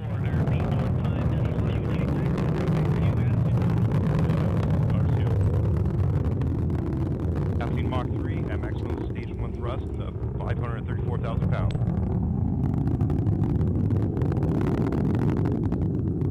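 Steady low rumble of the Minotaur IV's first-stage solid rocket motor burning in flight, with faint voices over it in the second half.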